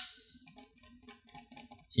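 One sharp click of a computer key or mouse button at the start, then faint scattered clicks and taps.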